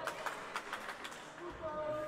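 Indoor sports hall ambience between volleyball rallies: distant voices of players and spectators, with scattered light knocks and footfalls on the wooden court.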